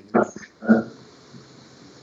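Two brief murmured vocal sounds in the first second, then quiet room tone.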